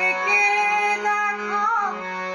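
A woman singing a Bengali Brahmo sangeet devotional song, holding long notes with small melodic turns over a steady drone and instrumental accompaniment.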